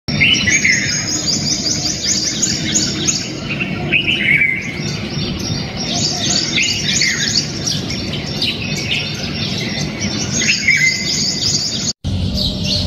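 Many small birds chirping together in a continuous, overlapping chorus of quick high chirps. A lower, downward-sliding call comes through about every three seconds.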